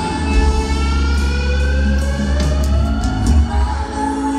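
Live rock band playing an instrumental passage: electric guitar over bass and drums, with a slow rising glide in pitch over the first three seconds. Heard through an arena PA and recorded on a phone.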